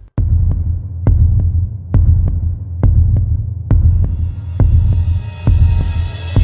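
Freight train rolling past close by: a heavy, steady low rumble with sharp wheel clicks over the rail joints, about two a second and often in pairs.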